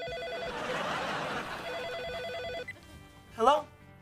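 Telephone ringing: two rings of about a second each, with a noisy stretch between them. A short spoken word follows near the end.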